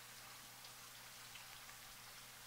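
Near silence: faint steady hiss of room tone with a low hum.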